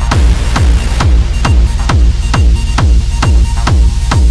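Dark techno music: a steady four-on-the-floor kick drum at about two beats a second, each kick a falling thud, over a heavy sustained bass and hissing high percussion.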